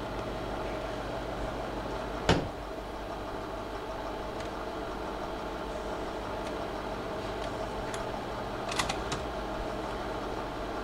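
Slide projector running with a steady fan and motor hum. There is a sharp click about two seconds in, and a quick pair of clicks near the end as the projector changes to the next slide.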